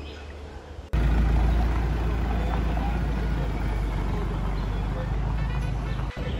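Minibus engine idling close by: a steady low rumble that starts suddenly about a second in.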